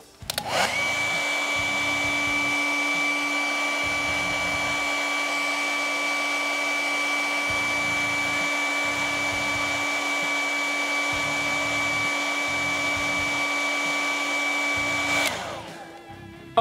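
Hair dryer switched on about half a second in, running steadily with a level whine over its blowing air, then switched off near the end and winding down.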